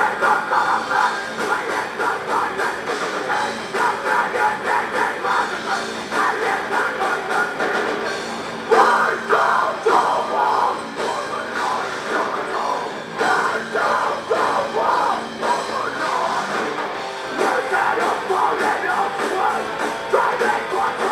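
Metal band playing live at full volume: distorted electric guitars, bass and drum kit, with vocals on the microphone. The song runs on without a break.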